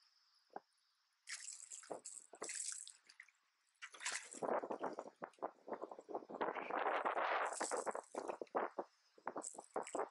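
Water splashing in irregular bursts at the surface right beside a boat, as a lightly hooked fish thrashes and shakes free and the lure is pulled out of the water; the splashing is loudest in a long stretch in the second half.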